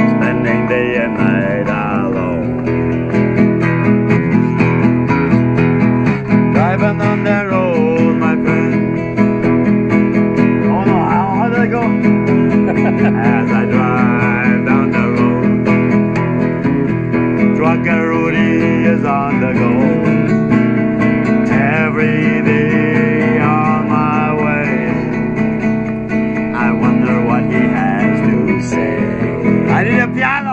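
A nylon-string classical guitar strummed steadily, with a man singing along in phrases that come and go.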